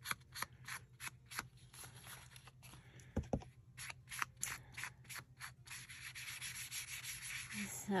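Ink blending tool rubbed and dabbed over the surface and edges of a piece of paper. It makes a quick run of short rubbing strokes, about three or four a second, that tail off about six seconds in.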